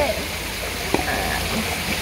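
Steady rush of running water from a garden koi pond, with one short sharp click about a second in.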